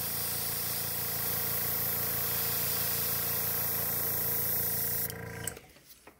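Iwata airbrush spraying paint: a steady hiss of air with a low, even hum beneath it, both cutting off about five seconds in.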